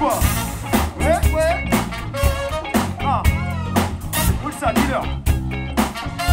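Live funk band playing a groove with a steady beat, bass and keyboard, with a voice singing over it.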